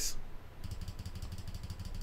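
Faint low background hum with a rapid, even faint ticking over it from about half a second in.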